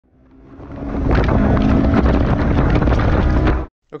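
Honda S2000's 2.2-litre inline-four, fitted with an aftermarket header and exhaust, running flat out at about 7,000 rpm, with wind rushing through the open-top cabin. The sound fades in over the first second, holds steady, then cuts off suddenly shortly before the end.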